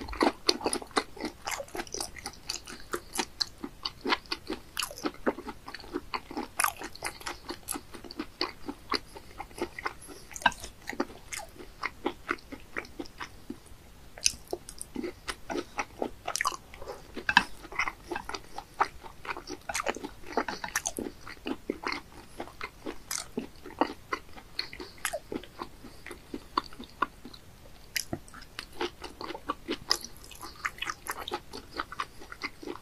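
A person chewing and biting raw sea bass sashimi close to the microphone: a quick, uneven run of crunchy chews, several a second, with a short lull about halfway through.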